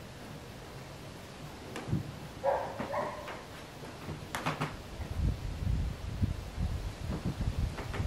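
A man's body moving on a wooden box during a handstand push-up drill: a few sharp knocks, a short voice-like sound about two and a half seconds in, and soft low thuds over the last few seconds as he comes down to kneeling.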